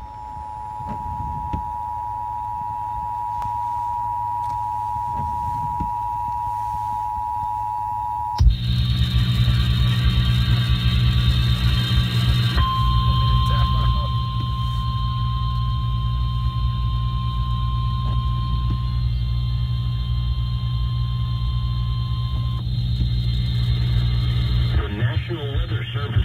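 Emergency Alert System alarm from a car radio speaker. A steady two-tone attention signal sounds for about eight seconds, then the broadcast switches abruptly to a humming relayed feed on which a single steady alert tone sounds for about ten seconds, with a short break. The tones herald a severe thunderstorm warning.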